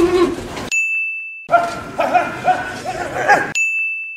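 Two bright, clear ding sound effects, like a 'correct answer' chime: one about a second in and one near the end. Each rings alone for under a second with all other sound cut away. Between them is a stretch of busier mixed background sound.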